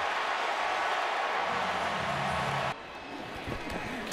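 Stadium crowd noise on a football broadcast, with a low steady drone joining it for the last second or so; it cuts off abruptly about two and a half seconds in.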